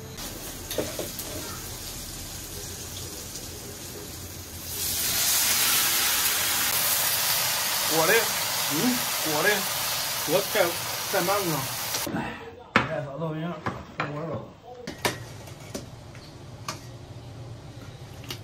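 Leafy greens frying in a hot wok, a loud steady sizzle that starts suddenly about five seconds in and stops abruptly about seven seconds later. A few sharp knocks of metal follow.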